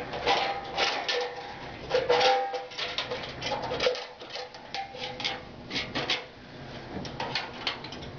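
A steel clamp ring being fitted around the rim of a Kason Vibroscreen stainless-steel screener: a run of metal clicks, knocks and scrapes, with a faint ringing tone now and then.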